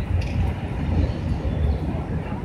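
Outdoor city-park ambience: a low, uneven rumble that surges and eases several times, with faint chatter of people in the background.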